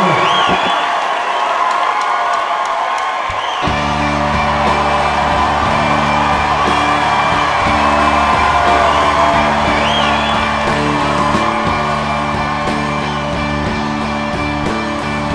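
Concert audience cheering, whooping and whistling, then about three and a half seconds in a piano starts playing low held chords that change about once a second, with the cheers and whistles carrying on over the music.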